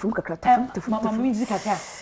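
Speech: a woman talking animatedly, with a short high hiss over the voice near the end.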